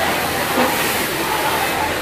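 Steady din of a garment factory sewing floor, with many industrial sewing machines running together and a short louder surge about half a second in.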